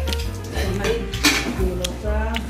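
Kitchen clatter of dishes, pots and cutlery being handled, with a few sharp clinks, the loudest just past the middle and near the end.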